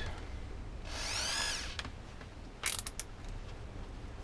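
Bosch cordless drill whirring briefly, its pitch rising and falling within under a second as the trigger is squeezed and released, then a short burst of ratcheting clicks from the chuck as the drill bit is fitted and tightened.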